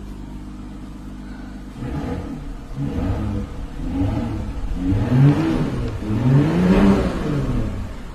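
A car engine heard from inside the cabin: it idles with a steady low hum, then is revved several times from about two seconds in, each rev rising and falling in pitch, the later revs louder.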